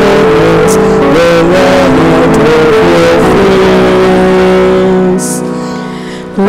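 Responsorial psalm sung with guitar accompaniment: a melodic line with gliding and long held notes over strummed chords. About five seconds in the sound drops and fades away at a phrase end.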